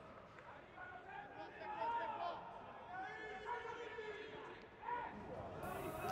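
Faint shouts and calls of footballers on the pitch, with no crowd noise in an empty stadium.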